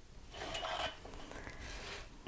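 Steel ruler being slid and repositioned over thick paper on a table: a faint scraping rustle, loudest about half a second in, then lighter rubbing.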